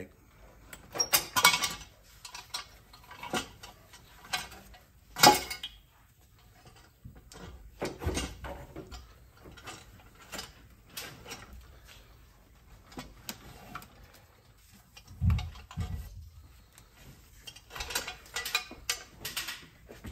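Intermittent knocks, clicks and clanks of a cast intake manifold being worked loose and lifted out of a diesel engine bay, hard parts bumping against the engine and wiring. There is a sharp knock about five seconds in and a low thump about fifteen seconds in.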